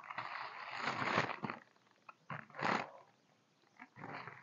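White tissue paper rustling and crinkling as it is pulled apart and lifted out of a box. It runs for about a second and a half, comes again in a short burst a little past halfway, then stops.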